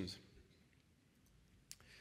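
Near silence in a pause in a talk, broken by a single sharp click near the end: the click of the slide being advanced, as the presentation moves to the next slide.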